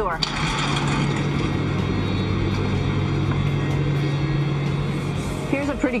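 Steady machinery hum of the space station's cabin: ventilation fans and equipment running continuously, a low drone with a few steady tones under an even airy hiss.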